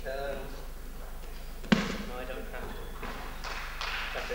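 One sharp thud about two seconds in: an aikido partner thrown and landing on the mat. A man's voice talks before and after it.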